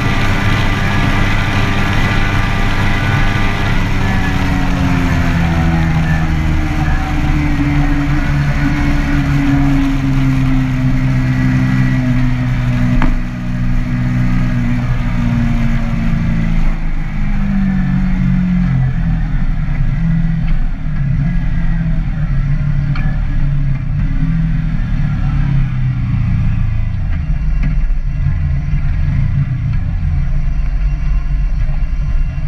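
Kawasaki Z-series motorcycle engine heard from the rider's seat with wind rush. It holds a steady pitch for a few seconds, then falls slowly in pitch over about twenty seconds as the bike slows, and the wind noise dies away. A short click comes about halfway through.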